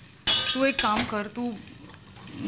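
Stainless-steel saucepan gripped with steel tongs and lifted off a gas-stove grate: a sharp metallic clink about a quarter second in, with a brief high ring.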